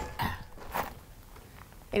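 Old circuit-breaker switches being flipped on a corroded electrical panel: two soft clicks about half a second apart.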